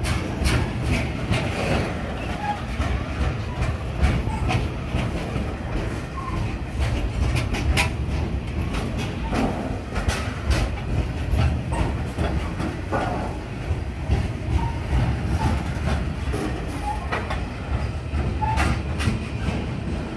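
Freight train of hopper wagons rolling past close by: a steady low rumble of wheels on rail, with frequent irregular clicks and clanks from wheels over rail joints and a few brief squeaks.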